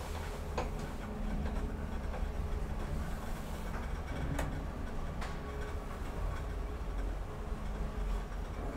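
1995 Deve Schindler hydraulic elevator car travelling down, with a steady low rumble throughout. A few sharp clicks come about half a second in and again around four and five seconds in.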